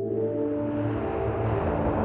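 Airbus A350 XWB jetliner in flight: a steady drone of engines and rushing air with a low hum, growing slowly louder.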